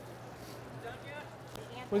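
Faint chatter of distant voices in a large hall over a steady low hum, with a single click about one and a half seconds in.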